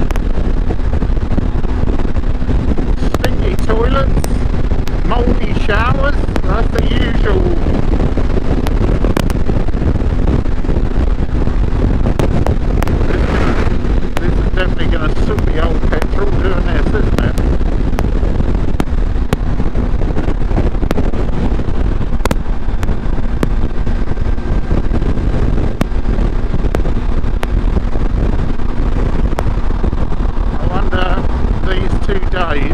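Heavy wind noise on the microphone over a motorcycle's engine running at a steady hum at motorway cruising speed.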